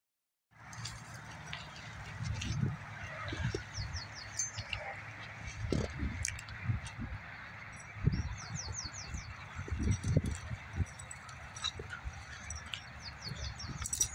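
Rustling and light thumps of movement through dry brush over a steady background hum. A small songbird repeats a short run of four or five quick, high, falling notes three times, about five seconds apart.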